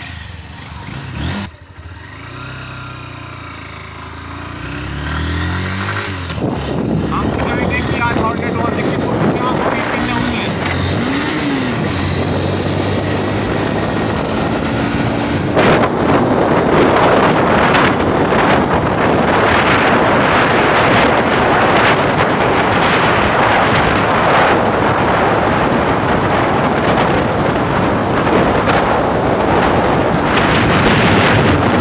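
Honda CB Hornet 160R's single-cylinder engine accelerating hard through the gears, its pitch climbing and dropping back with each upshift over the first several seconds. From about halfway, loud wind noise on the microphone buffets over the engine as the bike runs flat out at around 94 km/h.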